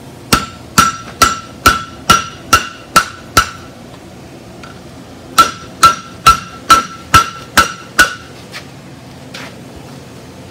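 Hand hammer blows on red-hot steel over an anvil horn, each leaving a short bright ring from the anvil. Eight blows at about two a second, a pause of about two seconds, seven more, then two lighter taps near the end.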